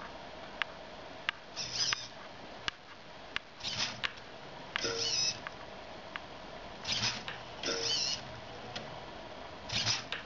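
Small hobby servo whirring in short bursts of under half a second, about six times, as it swings the gyro wheel toy's wire track up and down, with sharp single clicks in between. On a two-second delay the servo's cycle is out of sync with the wheel.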